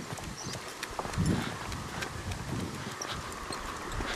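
Footsteps of a walker and a husky on a concrete footpath: a patter of small, irregular clicks.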